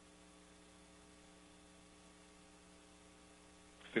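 Faint, steady electrical mains hum with a light hiss on the launch commentary audio feed, a stack of unchanging tones. A voice cuts in right at the end.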